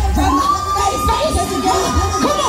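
Audience cheering and yelling, with one long high held scream over many overlapping voices, as the hip-hop backing beat cuts off about a third of a second in.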